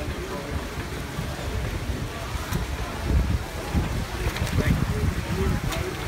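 Wind buffeting the microphone in irregular gusts, with faint voices and a few brief sharp clicks.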